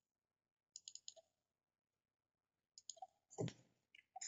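Faint computer mouse clicks: a quick cluster about a second in, then a few more near the end, the last one a little louder, as a file is opened.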